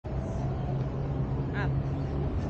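Steady outdoor city background noise with a low hum, as of distant traffic heard from a high rooftop. A brief high-pitched voice comes in about one and a half seconds in.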